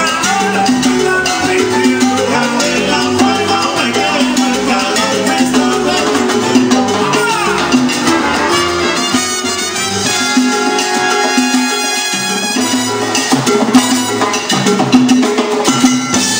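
A live band playing upbeat Latin dance music with drums and percussion keeping a steady beat.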